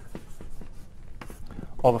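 Writing on a lecture board: a quick, irregular series of short taps and scratches as a formula is written out.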